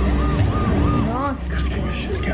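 Film trailer soundtrack: music with a deep bass under a high note figure that repeats about four times a second, and a brief rising sound effect a little over a second in.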